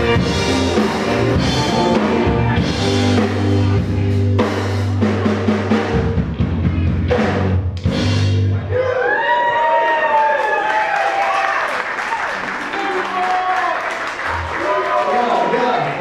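Live band of saxophone, electric guitars, bass guitar and drum kit playing the close of a song, ending on a held chord with a run of drum hits; the music stops about nine seconds in. After that come voices and crowd noise from the audience.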